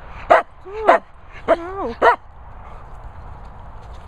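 A dog giving four short, sharp yips in quick succession, with whines that rise and fall in pitch between them; it stops after about two seconds.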